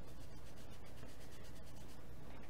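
Faint, steady scratchy rubbing of a dry wipe over skin, scrubbing off eyeshadow swatches.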